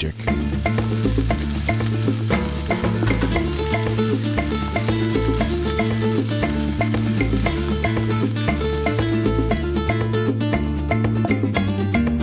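Beef short ribs searing in hot olive oil in a stainless steel pan, sizzling steadily. Background music with a moving bass line plays underneath.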